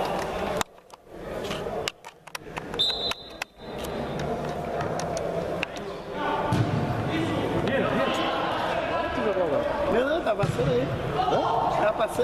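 Players' and spectators' voices calling out in an indoor sports hall, with the thuds of a football being kicked and bouncing on the pitch echoing around the hall. The sound drops out briefly a few times in the first few seconds.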